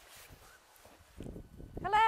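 A single loud, high, bleat-like animal call near the end, held briefly with its pitch falling slightly at the close, after a faint low rumble.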